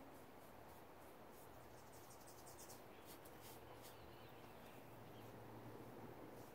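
Near silence: faint outdoor background with faint, irregular high-pitched chirps.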